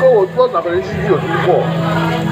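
A voice over a background song, with a steady low hum under it; no sizzling of the grilling meat stands out.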